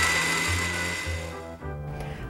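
Countertop blender motor running at full speed with a steady high whine, cutting off near the end.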